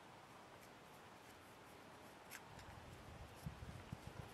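Faint scraping of a knife blade across the waxy, cotton-based tinder of a Live Fire Sport fire starter in its small metal tin. It is near silent at first, with a few soft scratches in the second half.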